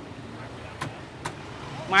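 Low, steady street noise with two sharp knocks about a second in, half a second apart, then a man's voice near the end.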